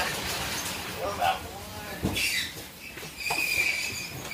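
Cardboard boxes being handled and sent down a roller conveyor, with a rattle of rollers and a sharp thump about two seconds in.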